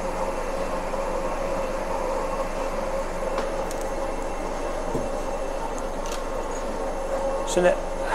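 Steady machine hum with a faint steady tone, from the equipment in a CT scanner room. A few faint clicks come from the contrast bottle and power-injector syringe being handled.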